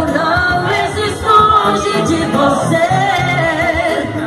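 Live band music with singing: a vocal melody over the band's backing, loud and continuous.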